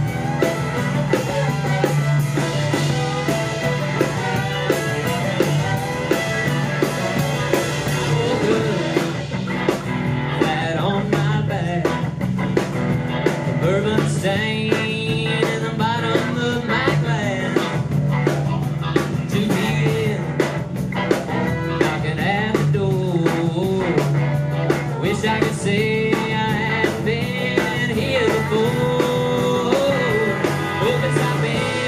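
Live band playing: fiddle, electric and acoustic guitars, bass and drum kit, with a steady drum beat.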